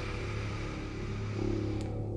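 A long, steady, breathy hiss of a slow inhale that stops shortly before the end, over a steady low background drone.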